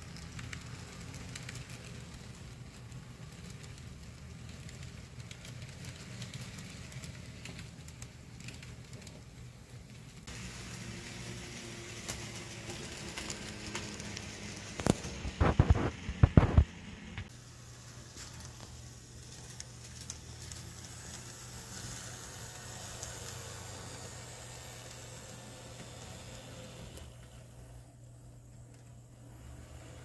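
Model freight train running on layout track: a steady low motor hum with the light rattle of the cars' wheels on the rails. About fifteen seconds in comes a quick run of loud clicks and knocks.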